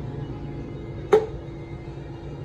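Steady hum of a running Nieco chain broiler, switched on with its gas off, with one sharp knock about a second in.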